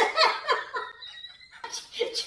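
A man laughing in a quick run of bursts that eases off briefly around the middle and picks up again near the end.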